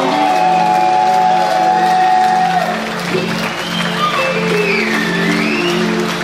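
Live rock band playing in a large hall: guitars over a steady, pulsing low bass line, a long held note for the first couple of seconds, then a high sliding lead line.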